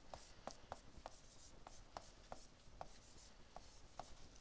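Faint ticks and light scratches of a stylus writing on a tablet screen, about a dozen short taps at an uneven pace.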